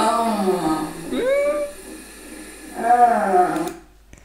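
A woman moaning through a labour contraction: three drawn-out vocal moans, the second rising in pitch and then held.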